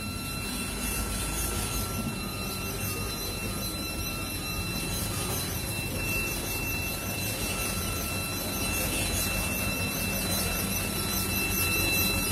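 Foton Tornado dump truck's diesel engine running steadily as the truck reverses slowly, growing a little louder toward the end as it comes closer.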